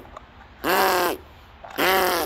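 An animal calling loudly, with caw-like calls about once a second, each rising then falling in pitch.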